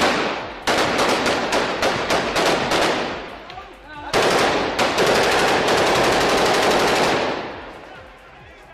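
Automatic rifle fire from several guns: rapid overlapping shots in the first few seconds, a brief lull, then from about four seconds in a long dense stretch of continuous fire that fades away near the end.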